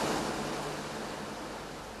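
Steady rushing noise of wind and sea, with a faint low hum underneath, easing slowly.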